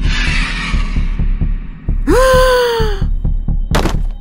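A low, heartbeat-like throbbing runs under a hissing rush that fades out over the first two seconds. Then comes one drawn-out creature screech, about a second long, that rises sharply and slowly falls, and a short burst of noise near the end.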